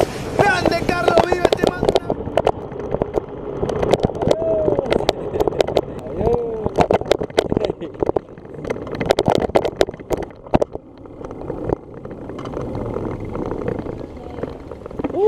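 Bicycle ride heard from a handlebar camera: a rough, fluctuating rush of air on the microphone, with many sharp knocks and rattles as the bike rolls over the road. A voice is heard at the start, and there are a few short vocal sounds later.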